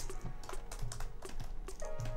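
Typing on a computer keyboard: a quick, irregular run of keystrokes, with soft background music underneath.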